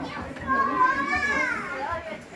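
A child's high-pitched voice: one drawn-out utterance starting about half a second in that rises and then falls in pitch, over lower voices.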